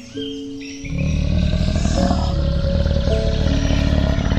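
Background music with steady held notes; about a second in, a loud, deep, rough lion roar joins it and carries on.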